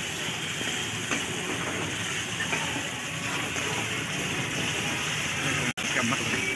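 Meat and masala sizzling in a hot iron pan, a steady frying hiss, while a ladle stirs it with a few light scrapes. The sound drops out for an instant near the end.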